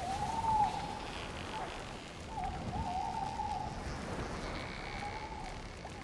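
An owl hooting several times, each hoot a wavering held note, over a steady low rushing background of water.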